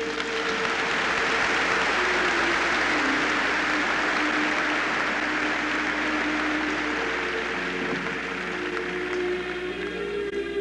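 Audience applauding over background music; the applause starts at once, holds steady, and thins out near the end while the music carries on.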